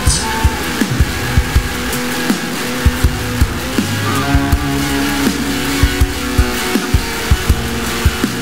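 Instrumental stoner-rock passage with no vocals: distorted electric guitar and bass over drums keeping a steady beat, with the guitar notes sliding in pitch now and then.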